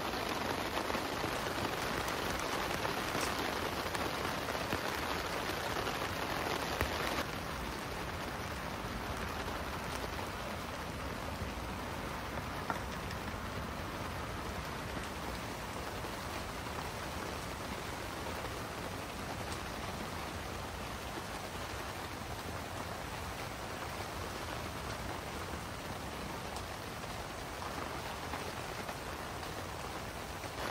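Steady rain falling on the fabric of an inflatable tent, heard from inside. The level drops a little about seven seconds in and then holds even.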